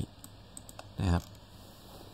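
A few faint, short clicks from computer input while a chart view is being moved, with one brief spoken syllable about a second in.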